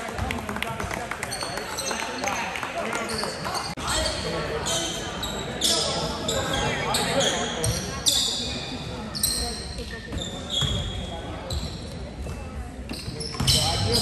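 Gym crowd chatter with a basketball bouncing on the hardwood floor, and many short high-pitched sounds that come and go throughout.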